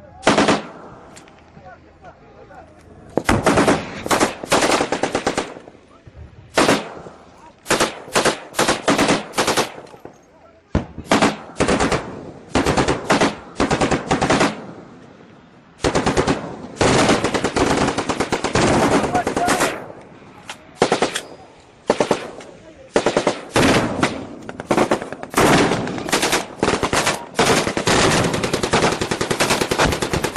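Repeated loud bursts of automatic gunfire, some short and some running for several seconds, with brief gaps between them.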